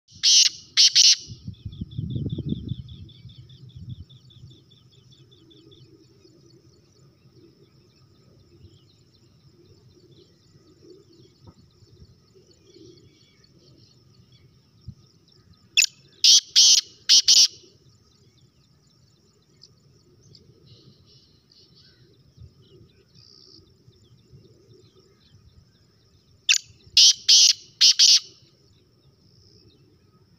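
Caged francolin (titar) calling three times, about ten seconds apart: each call is a loud burst of three or four sharp notes. A softer high rattling trill runs through the first few seconds, with a low rumble about two seconds in.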